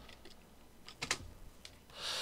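Computer keyboard typing: a handful of light key taps, the loudest pair about a second in.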